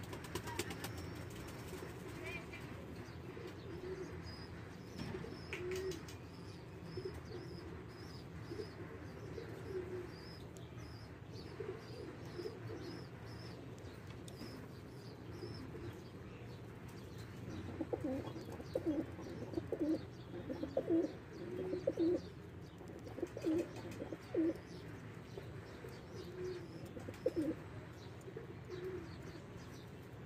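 Domestic pigeons cooing, low calls coming in short pulses, more often and louder in the second half. A faint row of short high peeps runs through the first half.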